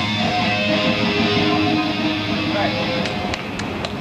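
Loud rock music with electric guitar from a band performance, with a few sharp clicks near the end.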